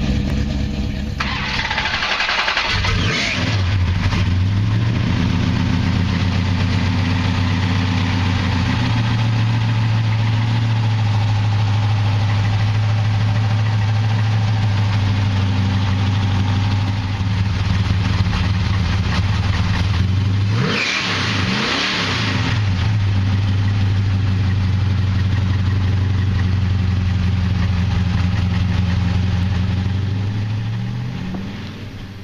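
The 1968 Dodge Coronet Super Bee's 440 big-block V8 idling, revved twice by a blip of the throttle, about two seconds in and again about twenty-one seconds in.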